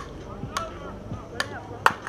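Several sharp knocks over faint voices, the loudest near the end: a softball bat striking the ball.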